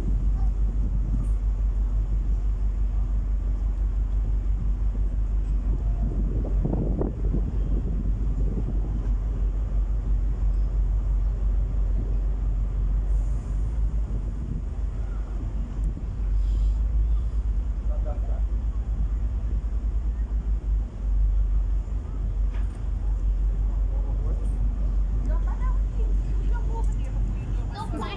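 Steady low rumble on a car ferry's open deck: wind buffeting the phone's microphone over the ship's engine noise, with faint voices in the background.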